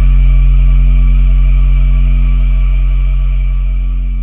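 Brazilian funk montagem's closing note: one deep synthesized bass note held and slowly fading, with faint high tones ringing above it.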